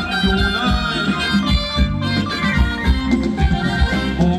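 Live Thai ramwong dance band music played loud over a PA: a sustained lead melody over bass and a steady drum beat.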